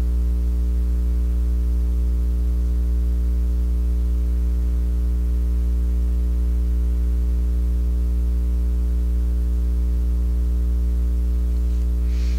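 Steady electrical mains hum on the recording, a low drone with a ladder of evenly spaced overtones and a little hiss, unchanging throughout.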